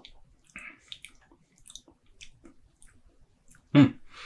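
Faint wet mouth sounds of someone tasting a drink just swallowed: small lip smacks and tongue clicks scattered through the quiet. A short hummed "hmm" near the end is the loudest sound.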